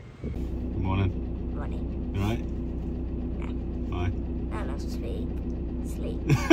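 VW Crafter van's diesel engine idling steadily, heard from inside the cab.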